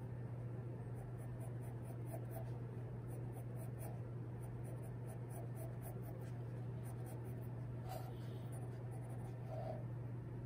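Graphite pencil sketching on drawing paper: quick runs of short, scratchy strokes over a steady low hum.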